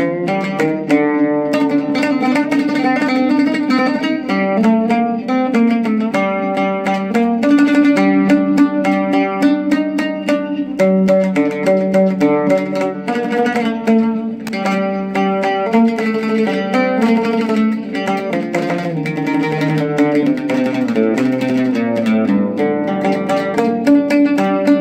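Oud played solo: an unbroken stream of quick plucked notes carrying a melody, dipping into lower notes about twenty seconds in.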